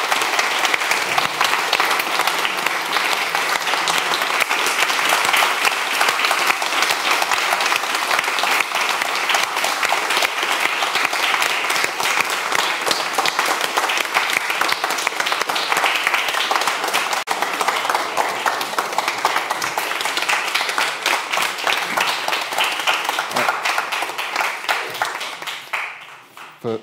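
Audience applauding: a long, steady round of clapping that dies away near the end.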